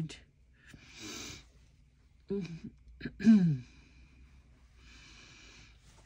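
A woman murmuring to herself while searching: two short hums, then a louder hum that falls in pitch about halfway through. Soft rustling of fabric scraps being handled comes before and after.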